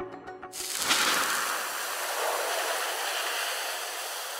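Background music dies away in the first half second. About half a second in, a steady rushing noise like running water or wind comes in with a brief swell and holds, slowly fading.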